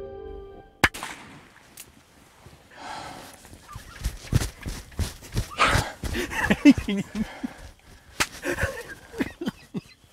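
A single sharp shot from a .44 Magnum revolver about a second in, cutting off the music. It is followed by rustling, clicks and hushed, breathy exclamations inside a ground blind.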